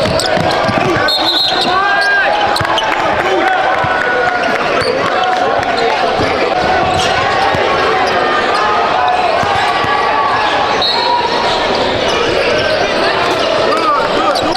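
Live basketball game sound in a large gym: a ball dribbling on a hardwood court, short high sneaker squeaks, and a steady babble of players' and spectators' voices echoing in the hall.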